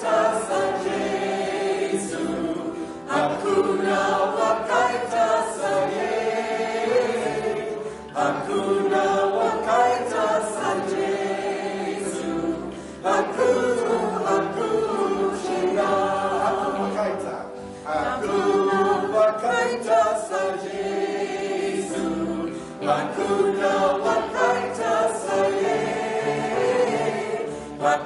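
A group of voices singing a Shona song together, in phrases of about five seconds with short breaks for breath between them.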